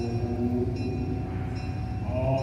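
Live ensemble music: several held, sustained notes changing pitch now and then over a steady low drone.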